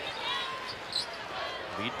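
A basketball being dribbled on a hardwood court during play, over faint arena background noise.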